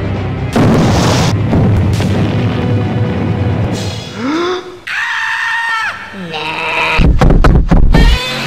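Soundtrack music for an animated film with a character's vocal yell in the middle and a quick run of heavy booms in the last second.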